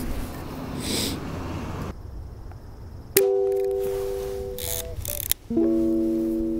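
Background music of held, pitched notes that starts abruptly about three seconds in, after a couple of seconds of outdoor ambient noise with a low rumble.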